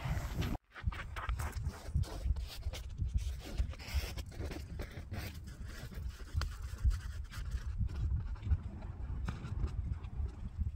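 Footsteps crunching and scraping in packed snow as a person climbs a snow pile, irregular crunches over a low wind rumble on the microphone.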